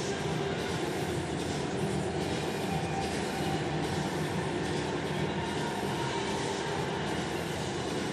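Steady, unbroken murmur of a large stadium crowd.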